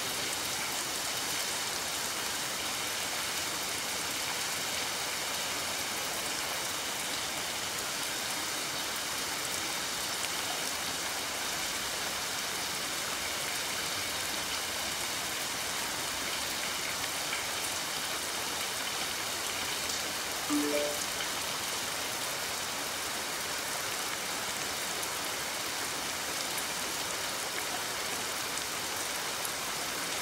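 Steady rain falling, a constant even hiss of rain on surfaces.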